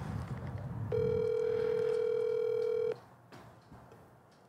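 Ringback tone of an outgoing phone call, heard over a phone's speaker: one steady ring lasting about two seconds, starting about a second in, while the call goes unanswered.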